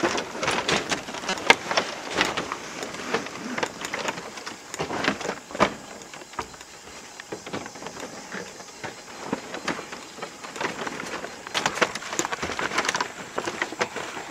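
Irregular knocks, creaks and rustling as someone climbs a rough wooden pole ladder up into a tree hide, with camera handling noise. The knocking thins out in the middle and picks up again near the end.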